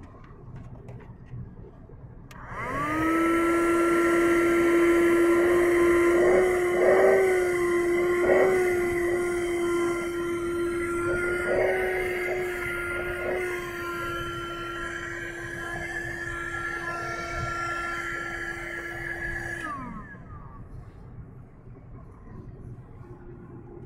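Cheap 12-volt car vacuum cleaner switched on: its small motor spins up about two and a half seconds in to a steady high whine. Its pitch wobbles briefly several times as the hose nozzle is worked over the floor carpet, then the motor winds down and stops about two seconds before the end.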